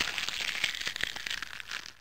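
A spade being driven into grassy turf: a continuous crackling crunch of soil and grass as the blade cuts in, with many sharp clicks.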